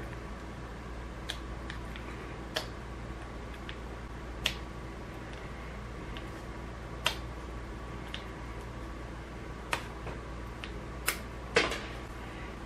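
About seven light, sharp clicks and taps of small extruder parts being handled and prodded with a tool while a bearing is pushed out of its plastic housing. The clicks come every second or two over a steady low hum.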